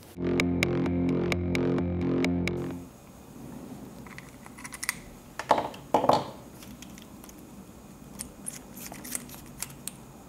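A steady synthesizer chord with a regular ticking pulse for about three seconds, cutting off suddenly. Then quiet workbench handling: scattered light taps and clicks of tools on the soldering bench, two sharper ones near the middle.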